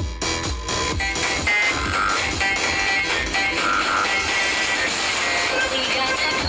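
Loud electronic dance music played through large stacked loudspeaker systems, with a heavy bass drum beat of about two to three hits a second. About a second in, the beat thins out and a busier passage with held higher notes takes over.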